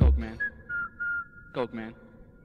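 Hardcore techno breaking down: the heavy kick drum stops right at the start, leaving a thin whistling tone that slides and steps in pitch, with two short voice syllables about one and a half seconds in.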